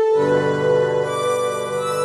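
Casio electronic keyboard playing sustained held chords; just after the start a new chord with lower notes comes in and holds.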